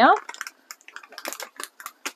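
Scattered light clicks and taps of hands handling kitchen items, faint and irregular, after a spoken word ends at the very start.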